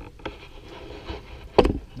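Low rubbing and handling noise with a light click, then a sharp knock about one and a half seconds in as a metal cooking pot is set down on an electric coil stove.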